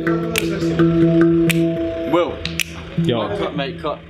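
Handpan struck with the fingers, its notes ringing on and overlapping, about two strokes a second for the first two seconds. Voices follow in the second half.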